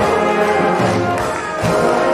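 Brass band playing, with brass instruments holding full chords over low bass notes; the sound dips briefly about a second and a half in, then comes back up to full strength.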